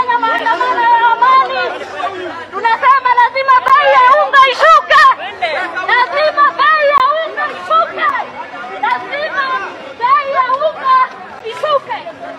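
A woman shouting at high pitch through a handheld megaphone, with other voices chattering around her.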